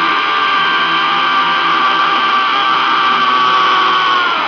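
A rock singer's long, harsh screamed note, held at one pitch, sung into a microphone over distorted electric guitar.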